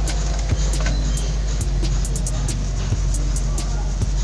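Scattered sharp clicks and crackles of a cut plastic bottle being handled and pulled away from an air-layered branch, over a steady low drone.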